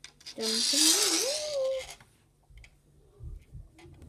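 A wordless, breathy vocal sound from a person, about a second and a half long, its pitch wavering and then rising. A few soft low handling thumps follow.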